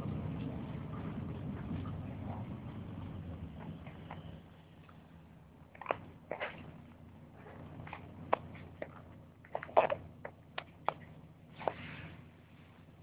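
A low rumble fading away over the first four seconds, then scattered sharp clicks and knocks of a handheld phone being handled and moved, loudest about ten seconds in.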